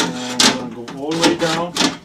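Door glass of a 2010 Mitsubishi Outlander scraping and knocking against the door shell and seals as it is slid down into the door, with a wavering pitched sound running over most of it.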